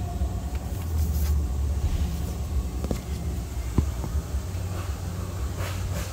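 Plastic radiator cooling fan assembly being worked loose and pulled up, knocking sharply twice about three and four seconds in, over a steady low rumble.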